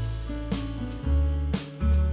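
Instrumental background music with guitar, sustained bass notes and a steady beat.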